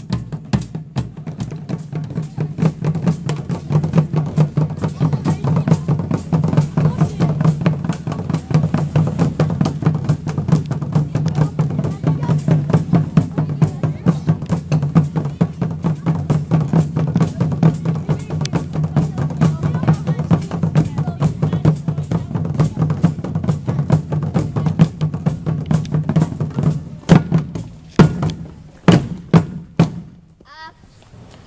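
Schoolchildren's marching drums, bass drum with other drums, played with sticks in a fast, steady marching beat. Near the end the beat breaks into a few loud single strokes and stops.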